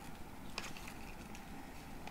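Faint handling of a folded paper cube and sticky tape: a few light clicks and rustles as the tape is pressed onto the paper flaps, the clearest about half a second in.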